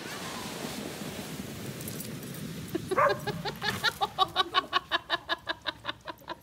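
An inflatable snow tube sliding over snow gives a steady hiss. About three seconds in, a dog starts barking rapidly and excitedly, about five short barks a second.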